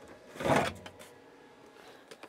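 A Kress 60V battery pack pulled out of the Kress CyberTank power station's charging port: one short plastic sliding sound, about half a second long, near the start.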